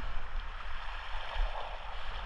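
Small waves washing and lapping against shoreline rocks in a steady wash, with a low rumble underneath.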